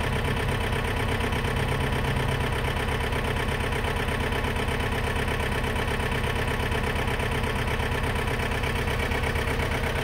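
A steady engine drone running evenly and unchanged throughout.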